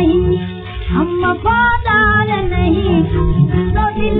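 A woman singing an Urdu nazm in Hindustani classical style, with ornamented, gliding phrases over steady musical accompaniment, played from a 1931 Columbia 78 rpm shellac gramophone record.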